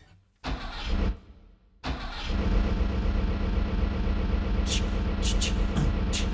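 A motor vehicle engine being started as a sound effect in the recording: two short cranking bursts, then it catches about two seconds in and keeps running steadily. A few short hissing bursts come in over it after about five seconds.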